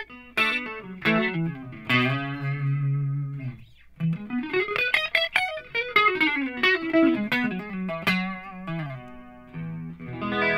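Electric guitar played through a Line 6 Helix clean tone. A few strummed chords and one held chord come first, then a quick rising run of lead notes about four seconds in. Busy playing follows and settles back down, with a new chord struck near the end.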